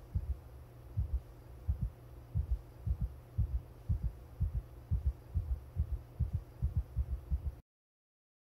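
Heartbeat sound effect: paired low thumps that come faster as it goes on, over a low hum. It cuts off abruptly near the end.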